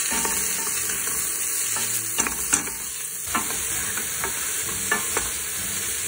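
Onions and chopped vegetables frying in a stainless steel pot, giving a steady sizzle. A wooden spoon stirs them, knocking and scraping against the pot several times.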